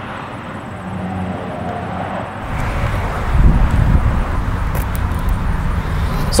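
Outdoor noise: wind rumbling on the microphone over the hum of a motor vehicle, with the gusty low rumble heaviest in the second half.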